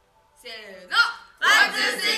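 A group of young men and women shouting together in unison. One voice first rises in a quick high call about half a second in, then the whole group joins loudly about a second and a half in.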